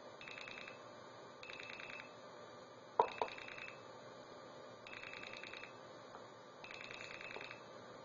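A 2600 Hz tone from an Arduino-based blue box, keyed on and off in rapid pulse trains at the make-and-break ratio of a standard telephone dial, one short train per dialed digit, five in all. It plays through an old Western Electric 500 telephone earpiece used as a speaker. There is a sharp click about three seconds in.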